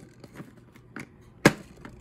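Hard plastic marble-run track pieces being handled, with a few light clicks and one sharp clack about one and a half seconds in.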